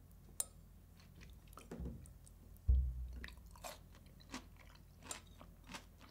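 Close-up sounds of a man chewing a mouthful of herring and Puszta salad, soft wet clicks scattered through. About two and a half seconds in there is one dull low thump, the loudest sound.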